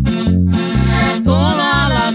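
Norteño corrido music: accordion over a bajo sexto and bass keeping a steady oom-pah beat of about two strokes a second, with a wavering accordion melody line in the second half.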